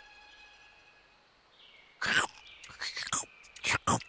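Cartoon caterpillar munching a leaf: a few crisp, crunchy bites in the second half, over faint steady background tones.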